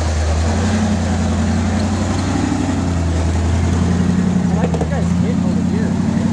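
1979 Ford pickup's engine running steadily at low revs as the lifted 4x4 crawls through snow, its pitch shifting slightly with the load.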